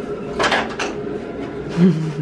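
A whole lobster being put into a large steel stockpot of salted water, with a short burst of splashing and knocking about half a second in, over a steady hum.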